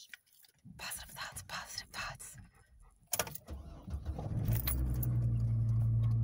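Keys rattle in the ignition, then about three seconds in the pickup truck's engine is cranked, catches and settles into a steady idle. The truck is hard to start, which the owner puts down to a failing fuel pump.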